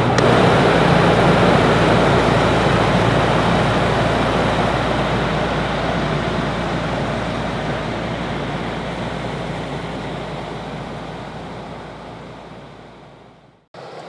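Camper van's rooftop air conditioner switched on and running: a steady rush of blowing air over a low motor hum, gradually fading away.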